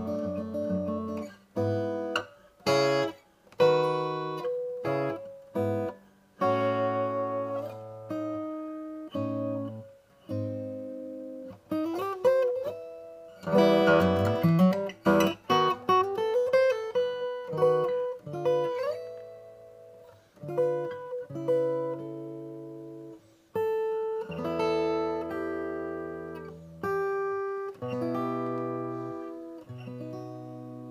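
Mahogany Martin 000-17S acoustic guitar fingerpicked in an instrumental arrangement: single notes and chords plucked and left to ring out, with short gaps between phrases and a few notes sliding in pitch in the middle.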